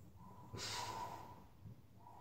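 A person's faint breathy exhale, about half a second long, through the nose or mouth.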